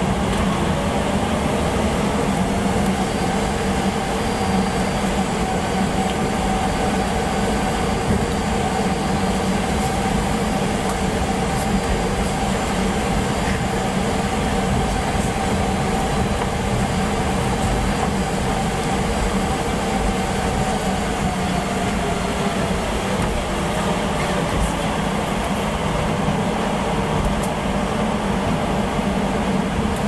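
Cabin noise of a Boeing 737 taxiing: a steady jet-engine hum and rumble with a higher whine in it that fades away about two-thirds of the way through.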